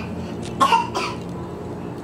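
A woman clears her throat once with a short cough, a little over half a second in, over a low steady hum.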